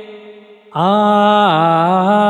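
Male voice singing a Bengali Nazrul Islamic song. A held note fades out, then about three-quarters of a second in a new sung phrase starts on an open "aa" and steps down in pitch.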